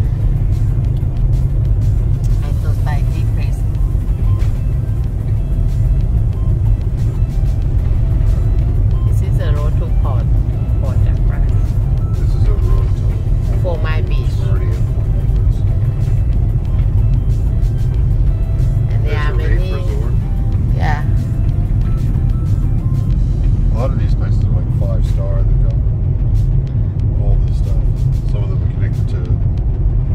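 Steady low road and engine rumble inside a moving Toyota Tarago minivan's cabin, with music playing over it.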